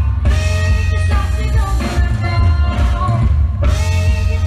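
A young girl singing into a microphone over amplified backing music with a heavy bass, in phrases with long held notes and a short breath about three and a half seconds in.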